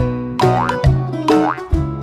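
Upbeat instrumental children's song music with a bouncy beat and a springy rising glide that recurs about once a second.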